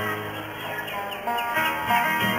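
Two acoustic guitars playing a soft instrumental passage of Yucatecan trova, sustained plucked notes without voice.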